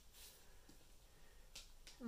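Near silence: room tone, with a faint short hiss about one and a half seconds in.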